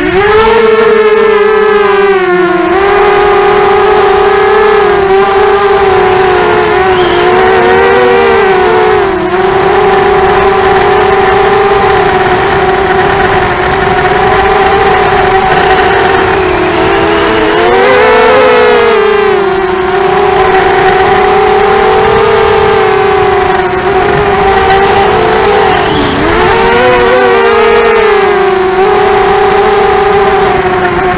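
FPV racing quadcopter's brushless motors whining close up at a steady high pitch, swinging up and down a few times as the throttle changes in flight.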